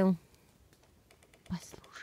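Woodpecker pecking at a tree: a series of faint, irregularly spaced taps, with one louder thump about one and a half seconds in.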